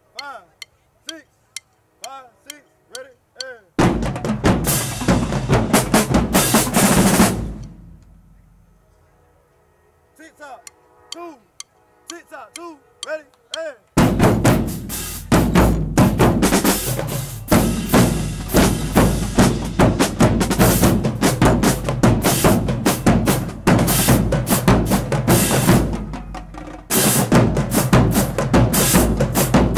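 College marching drumline of snares, tenor drums and bass drums warming up. There are a few scattered single hits, then a loud burst of full-section playing about four seconds in that dies away by about eight seconds. After more scattered hits, the whole section plays loudly without a break from about halfway through.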